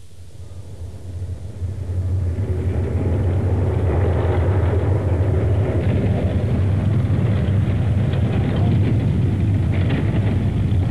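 Tracked armoured personnel carrier on the move: a deep, steady engine and track rumble that swells up over the first two seconds and then holds steady.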